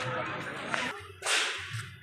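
Voices fade over the first second, then comes a sharp whooshing burst of noise, about half a second long, a little after a second in.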